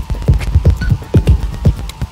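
Experimental noise music: irregular low throbbing pulses, several a second, each a short thud falling in pitch, over a steady hum and a thin high drone.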